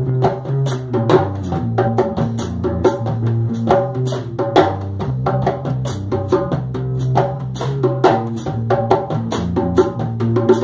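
Band playing an instrumental passage of a rock song with no vocals: a drum kit keeps a steady beat with regular cymbal hits under a held bass line and other pitched instruments.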